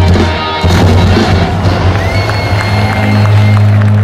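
Heavy metal band playing live through a festival PA, loud, with a low bass note held and ringing out from about a second in, while the festival crowd cheers.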